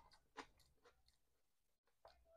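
Faint close-miked mouth sounds of a man chewing a bite of ketchup-covered sausage: a few soft wet clicks in the first second, thinning out after.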